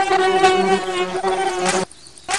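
A flying insect's wings buzzing: a loud, steady droning hum that cuts off abruptly near the end.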